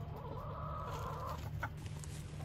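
A chicken calling once, a drawn-out call lasting about a second, over a steady low hum.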